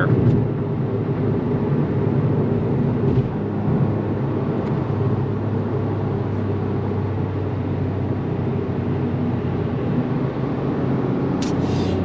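Toyota GR Yaris's turbocharged 1.6-litre three-cylinder engine running steadily at light load as the car slows at motorway speed, heard from inside the cabin with tyre and wind noise.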